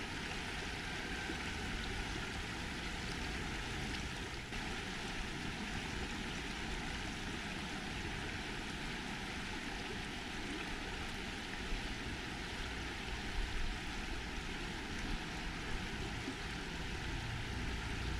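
Shallow river water flowing steadily over a cobble riffle close to the microphone, an even rushing sound.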